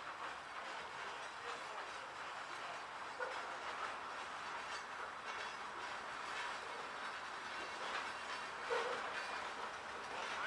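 Freight hopper cars rolling slowly along the track, with a steady rumbling of steel wheels on rail and intermittent clicks over the joints. There is a brief louder noise near the end.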